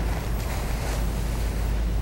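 Steady low hum with a faint even hiss: background noise with no distinct sound event.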